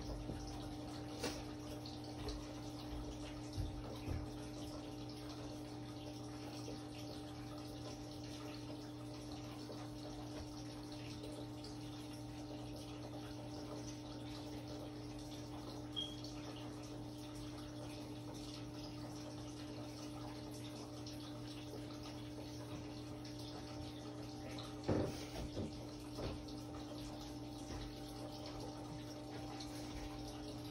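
A steady low machine hum holding one constant tone, with a few faint knocks and bumps, the clearest about 25 seconds in.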